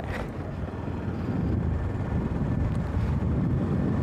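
Motorcycle riding along at a steady speed: engine and road rumble with wind buffeting the bike-mounted microphone.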